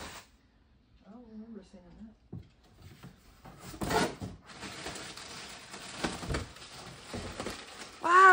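Rustling of cardboard and crinkling plastic as a plastic-wrapped bag of bean bag filler is pulled out of a cardboard shipping box. There are a couple of louder knocks about four and six seconds in. A faint voice speaks briefly about a second in.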